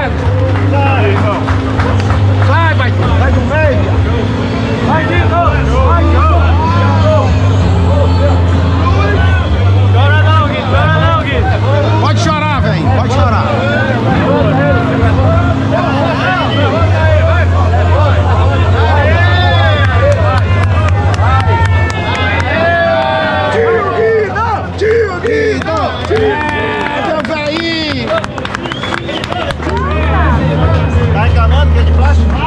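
A crowd of many people talking and calling out at once, over music with a steady low bass line that changes note every few seconds.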